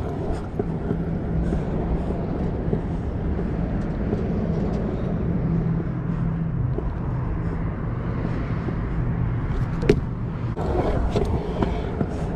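Pro scooter wheels rolling on concrete, a steady rumble, with a single sharp knock about ten seconds in.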